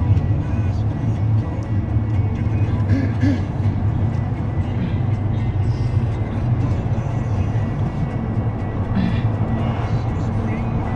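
Steady low rumble of a car's engine and tyres heard from inside the moving car, with music playing in the background.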